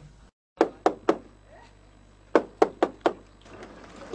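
A hand knocking on a weathered wooden door: three quick knocks, then after about a second's pause four more.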